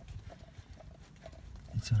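A few faint, soft clicks from the hand-priming lever of a Perkins diesel's mechanical fuel lift pump being worked to bleed air out of the fuel system, with a sharper click near the end.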